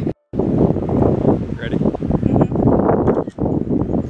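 Wind buffeting the camera microphone, a loud ragged rumble that drops out briefly just after the start.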